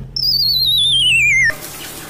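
A cartoon-style descending whistle sound effect: a wavering tone that slides steadily down in pitch for about a second and a half, then cuts off abruptly, over the low hum of a car's cabin.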